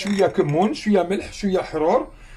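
A person speaking, continuous talk with no other sound standing out.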